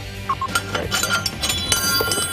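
Loose metal hardware clinking and clattering, several sharp strikes with a high ringing tone that grow denser in the second half.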